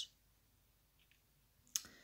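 Near silence in a small room, broken by one short, sharp click near the end.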